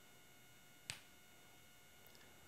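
Near silence: quiet room tone with a faint steady whine, broken once by a single short, sharp click a little before the middle.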